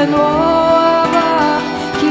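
Voices singing a slow melody of long held notes that glide from pitch to pitch, accompanied by acoustic guitar.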